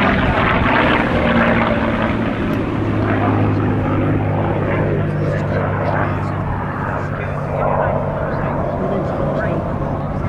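P-51D Mustang's Packard Merlin V-12 engine running steadily in flight, a constant propeller-driven drone that holds its note throughout.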